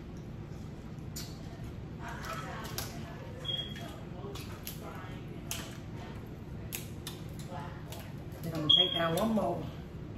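Crab shells being cracked and picked apart by hand: a series of sharp snapping clicks at irregular intervals over a low steady room hum. About nine seconds in, a louder murmured voice, like a mouthful 'mm-hmm'.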